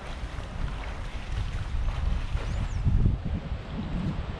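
Wind buffeting the camera microphone: a low, gusting rumble that swells about three seconds in. A faint, brief high chirp sounds near the middle.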